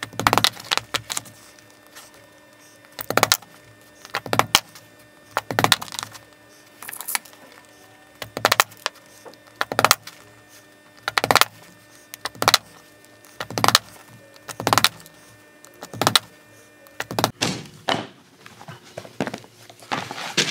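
Small hammer tapping tiny clenching nails into leather to tack piping in place: sharp taps about once every second or so, some in quick pairs or clusters.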